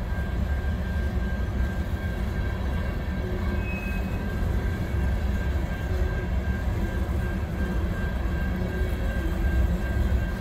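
Empty covered hopper cars of a freight train rolling past: a steady rumble of wheels on rail, with a thin steady high whine above it.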